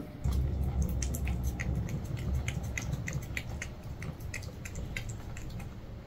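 A cat licking puree from a Churu treat tube: a quick run of small wet tongue clicks, about two or three a second, over a low steady rumble.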